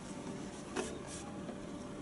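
Faint handling noise: two or three brief soft rubbing scrapes just under a second in and shortly after, over a steady low room hum.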